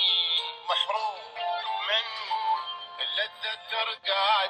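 Arabic singing playing from the built-in loudspeaker of a ByronStatics portable AM/FM radio cassette player, picked up off the air. The sound is thin and tinny, with no bass.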